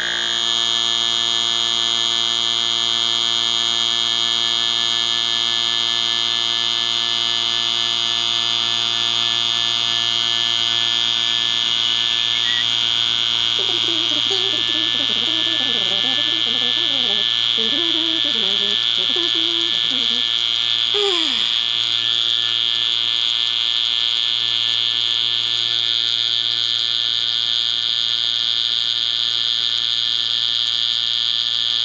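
HVAC-style electric rotary-vane vacuum pump running steadily with an even, high-pitched hum as it evacuates a sealed pressure-canner vacuum chamber.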